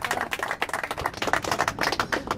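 A small group of people applauding: many hands clapping at once in a quick, uneven run of claps.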